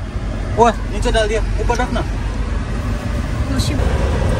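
Steady low rumble of road and engine noise inside the cabin of a moving five-door Mahindra Thar SUV.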